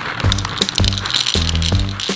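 Dry dog kibble pouring from a cardboard box and rattling into a small plastic bowl, over background music.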